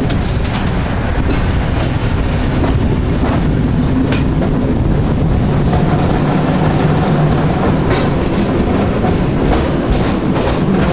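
San Francisco cable car in motion: a continuous loud rumble and rattle of the car on its rails, with scattered clacks and a low steady hum that grows about halfway through.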